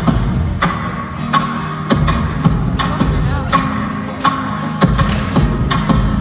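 A live band playing at a soundcheck in a large, near-empty arena: drums keep a steady beat, hitting about every three-quarters of a second, over bass guitar.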